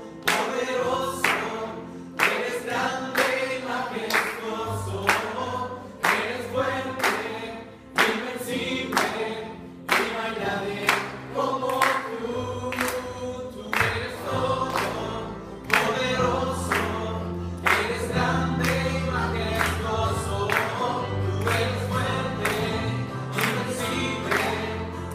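Worship band and congregation singing a Spanish praise song together, many voices over a strummed acoustic guitar and keyboard, with a steady beat of about two strokes a second.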